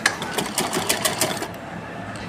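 Black RMI straight-stitch sewing machine stitching pleats into cotton fabric: a quick, even run of needle ticks, about eight to ten a second, that stops about one and a half seconds in.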